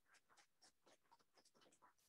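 Near silence: room tone with faint, scattered light ticks and scratches.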